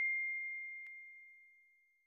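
The fading tail of a single bell-like ding: one high ringing tone dying away evenly over about a second and a half, with a faint tick partway through.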